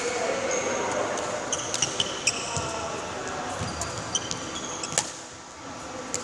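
Badminton rally: sharp racket hits on the shuttlecock, the loudest about two seconds in and again about five seconds in. Court shoes squeak briefly on the floor between shots.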